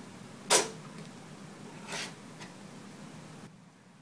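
A 2008 Mac Pro's hard-drive sled being pulled out of its drive bay. A sharp click comes about half a second in and is the loudest sound, followed by a softer click at about two seconds.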